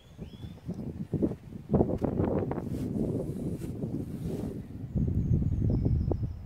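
Wind buffeting the handheld camera's microphone as a low, steady rumble, with a few soft thumps of footsteps through long grass as the camera-holder walks.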